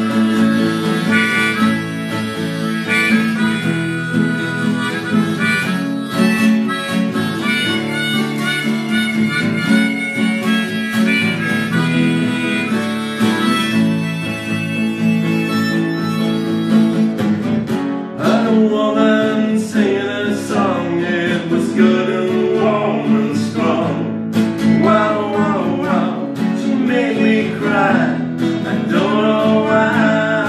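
Harmonica solo played on a neck-rack harmonica, over two acoustic guitars strumming chords.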